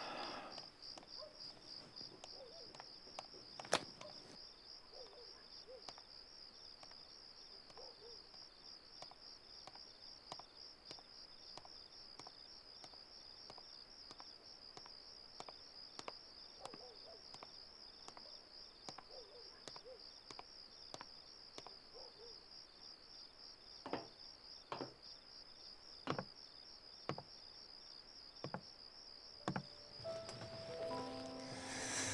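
Crickets chirping steadily in a fast, even high-pitched pulse, faint. A few soft knocks break in, a sharper one about four seconds in and several close together near the end.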